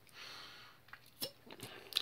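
Faint sounds of a sip from a small energy-shot bottle: a soft airy sip in the first half-second, then a few faint mouth clicks as it is swallowed.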